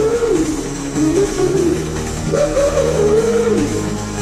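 Electro-industrial rock music: a lead line sliding up and down in arcs, each about a second long, over sustained bass and synth tones.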